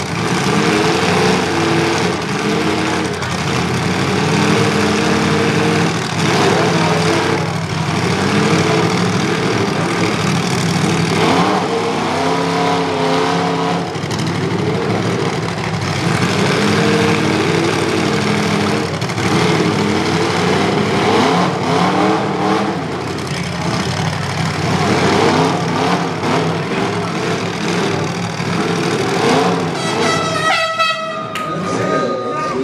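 Demolition derby vehicle engines revving hard in repeated surges while the trucks push against each other in the mud, with wheels spinning and throwing dirt. The engine pitch rises and falls every couple of seconds.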